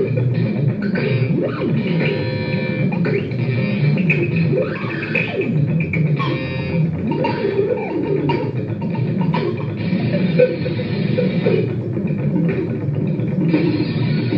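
Improvised experimental sound performance: amplified plucked and scraped sounds played through a guitar amplifier with effects, over a dense, continuous low mass of sound.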